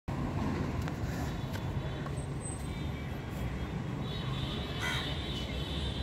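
Steady low outdoor rumble, like wind on the microphone or distant traffic, with a few faint clicks in the first two seconds.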